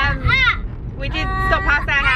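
A toddler's high-pitched squealing voice, several short arching squeals with one held note, over the steady low rumble of a car driving.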